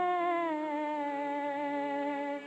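A woman singing a long held note on an old 1930s film soundtrack. About half a second in, the pitch slides down a step, and the lower note is held.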